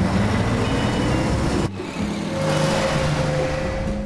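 A coach toilet's foot-pedal flush, a steady rushing whoosh with a slowly rising tone, broken by a short dip a little before halfway, over the low drone of the moving coach.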